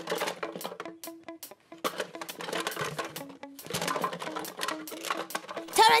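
Light cartoon background music under a run of clattering knocks as toys are rummaged through in a toy box.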